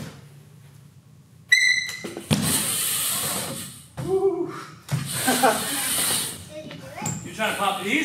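BMX bike riding a wooden indoor ramp: a sharp metallic clank with a brief ringing tone about a second and a half in, then tyres rushing across the wood in two passes, with short shouts from the riders in between.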